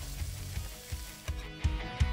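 Background music fading in with a steady beat of about three thumps a second, under the fading sizzle of gnocchi frying in a pan.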